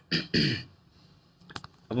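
A man clearing his throat in two short, quick rasps, followed by a couple of faint clicks.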